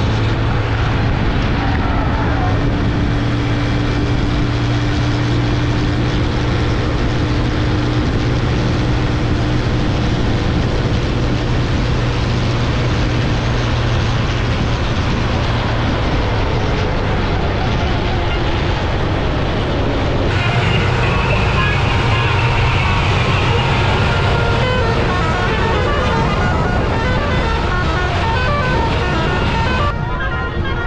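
Farm tractors' diesel engines running hard, a steady low drone mixed with wind and rumbling noise. About two-thirds of the way through the sound changes and crowd voices come in over the engine noise.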